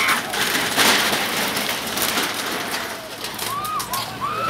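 Commotion at a demolition: a noisy clatter and crashing of a wooden shack being broken up, with short shouted cries from the crowd near the end.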